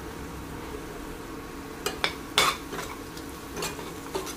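A spoon stirring onions and spice powders in a stainless steel pan: a few sharp scrapes and clacks against the pan start about halfway through, the loudest just after the middle, over a faint steady sizzle.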